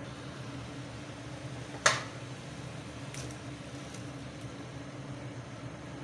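Water boiling in a pan on a stove burner, a steady hiss with a low hum under it. One sharp knock about two seconds in and a faint tick a little later, as the broccoli goes into the pan.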